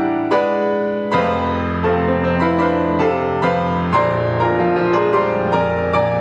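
Fazioli grand piano played solo: a busy passage of quick notes over held bass notes, with a deep bass entry about a second in.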